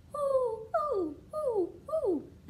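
A woman imitating an owl's hoot, singing four 'ooh' calls one after another, each sliding down in pitch, the fourth starting near the end.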